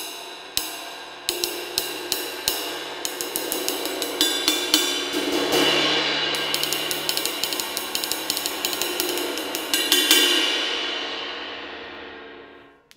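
Hand-made 22½-inch Labyrinth ride cymbal of about 2425 grams, played with a wooden drumstick. A run of ride strokes quickens and builds into a ringing wash about halfway through. A last loud stroke comes about ten seconds in, and then the cymbal rings on and fades.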